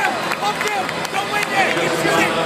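Basketball arena crowd: many voices shouting and talking over one another at a steady, fairly loud level.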